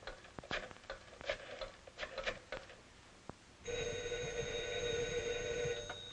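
Rotary telephone dial clicking as a number is dialled, then a telephone bell ringing for about two seconds before cutting off abruptly as the receiver is lifted.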